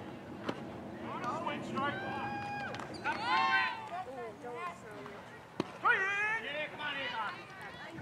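Voices of players and spectators at a youth baseball game shouting and calling out across the field in several drawn-out yells, none of them clear words. Two sharp knocks cut through, one about half a second in and one a little before six seconds.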